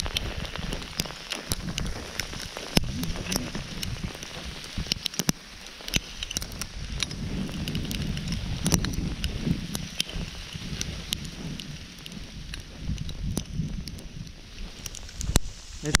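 Footsteps crunching over a thick layer of sleet, with many irregular crackling ticks and a low uneven rumble.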